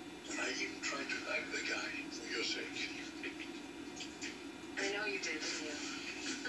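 Faint background speech from a television, with several stretches of talk broken by short pauses, over a steady hum.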